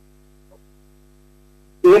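Faint steady electrical mains hum, a set of low tones, in a video-call audio feed during a pause; a man starts speaking near the end.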